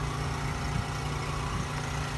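An engine running steadily at idle, a low even drone with a faint hiss over it.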